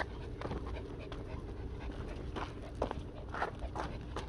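Small dogs panting hard in quick, uneven breaths while pulling on their leashes, over a low steady rumble.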